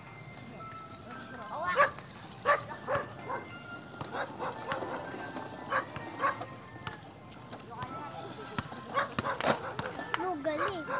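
A dog barking repeatedly in short calls, the loudest about two seconds in and several more close together near the end.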